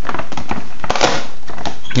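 Cardboard figure-set box being handled and its front flaps swung open: rustling and scraping of card close to the microphone, with a few sharp clicks.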